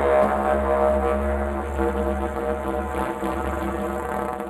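Didgeridoo playing a low, steady drone, its overtones shifting in strength. The lowest part of the drone weakens about three seconds in.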